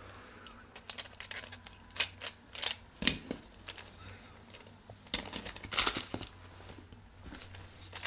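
Plastic action-camera housing and bicycle handlebar mount being handled and fitted together by hand: scattered clicks, taps and short scraping rubs, busiest around five to six seconds in.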